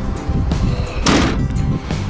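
A single heavy clunk about a second in as the front grille panel of a Scania R-series lorry swings and latches into place, over background music.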